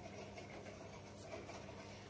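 Faint handling sounds of a paper cut-out and a clothespin being clipped onto a string, over a steady low hum.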